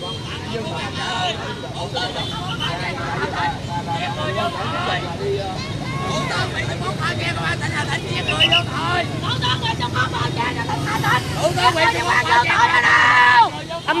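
A crowd of people talking over one another, with a steady low rumble underneath. The voices build louder toward the end and then break off suddenly.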